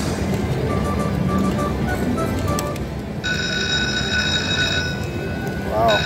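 Aristocrat Lightning Link Tiki Fire slot machine playing its win celebration while the win amount counts up, over casino floor noise. A steady high chiming chord enters about three seconds in and holds.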